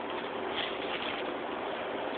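Steady hiss of background noise, with no distinct sound standing out.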